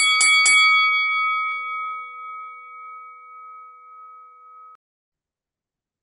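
Intro-sting sound effect: three quick metallic strikes in the first half second, then a bell-like chime that rings on and fades, cut off abruptly after almost five seconds.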